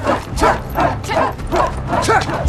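Short, sharp barking shouts from men's voices, repeated about three times a second: warriors' call to arms.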